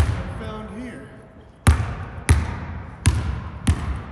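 Basketball dribbled on a hardwood gym floor, five bounces with an echo in the large hall. The first comes right at the start, then a pause of over a second, then four more about two-thirds of a second apart.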